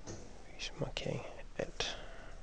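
Quiet, half-whispered muttering from a man: a few short, soft syllables broken by pauses, and no clear words.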